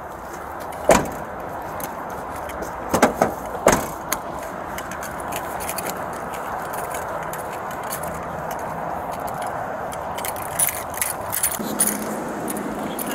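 A patrol car's rear door shuts with a loud slam about a second in, followed by a few sharp knocks against the door about two seconds later. Keys and duty gear then rattle over steady rustling noise as the officer walks, with a cluster of small jangling clicks near the end.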